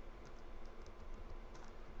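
Faint computer keyboard keystrokes: a few scattered, irregular key clicks.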